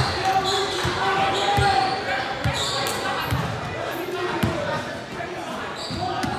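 Basketball bouncing on a hardwood gym floor during play, a low thump every half second to a second, echoing in the large hall. Indistinct shouting voices sound over it.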